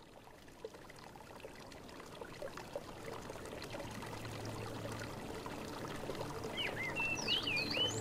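Running, trickling water fading in and growing steadily louder. Near the end come a few short whistled chirps, and a low steady tone sets in as music begins.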